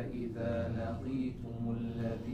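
Quran recitation in Arabic: a man's voice chanting slowly and melodically, with long held notes in tajweed style. It is softer than the spoken lecture around it.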